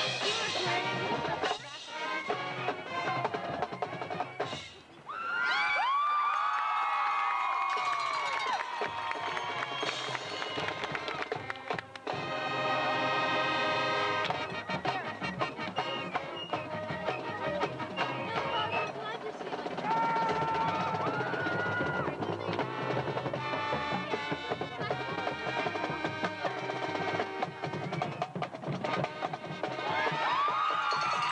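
Marching band playing brass and woodwinds over drums and front-ensemble percussion. The music dips briefly about five seconds in, then sweeping brass notes follow.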